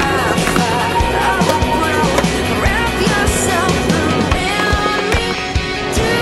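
Skateboard on concrete: trucks grinding along a concrete ledge and wheels rolling, with sharp clacks of the board, all under a music track.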